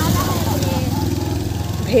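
A vehicle engine running steadily close by, its sound fading out near the end.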